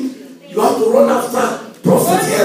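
A man's voice preaching loudly into a handheld microphone, in a burst of about a second and a half that the speech recogniser did not turn into words.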